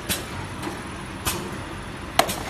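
Cellophane overwrapping machine running with a steady mechanical hum, marked by two sharp clacks about a second apart.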